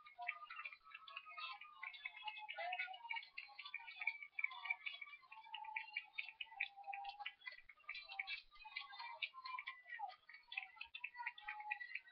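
Game-show countdown cue: a fast, steady ticking clock sound effect, heard faintly through a narrow, thin-sounding old TV soundtrack.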